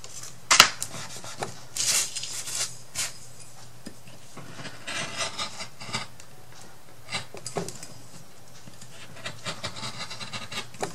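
Patterned paper rustling and rubbing against a cutting mat as it is handled and pressed down by hand, with scattered light taps. A single sharp click about half a second in is the loudest sound.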